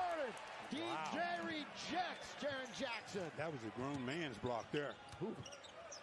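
NBA game broadcast audio playing at low level: a play-by-play commentator talking over the arena sound of play, with a basketball being dribbled.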